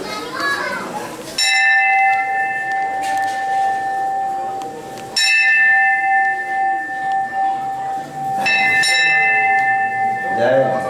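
A bell struck three times, about three and a half seconds apart, each stroke ringing on with a clear steady tone until the next.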